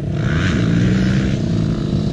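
Yamaha two-stroke dirt bike engine idling steadily, with a slight rise in pitch about half a second in.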